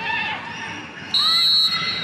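Referee's whistle blowing for full time: one long, shrill blast that starts suddenly about a second in and carries on past the end, over crowd noise.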